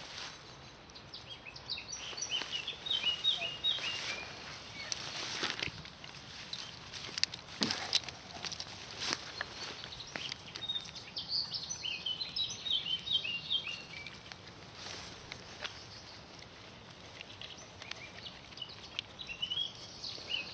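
A songbird singing in two runs of short, quick, falling chirps, about two seconds in and again around eleven seconds, over scattered rustles and scuffs in grass and dirt.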